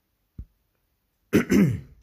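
A man clearing his throat: one short, loud, rasping throat clear about one and a half seconds in, after a faint low tap.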